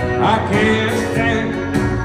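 Live country band performance heard from the crowd: a man singing over acoustic guitar, electric guitar and drums.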